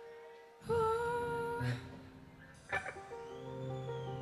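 Band instruments tuning up between songs. Steady held notes sound underneath, a louder single held note starts suddenly and lasts about a second, and a sharp knock comes later.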